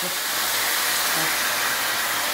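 Trapoeraba greens sizzling in a hot pan of lard and onion as handfuls are dropped in, a steady hiss.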